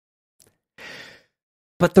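A reader's short, soft intake of breath about a second in, between sentences of reading aloud. Speech resumes near the end.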